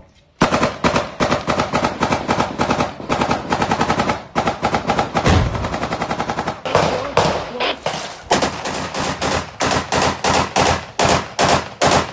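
Sustained automatic rifle fire: rapid strings of shots, one burst after another with only brief gaps, the bursts more broken up in the second half.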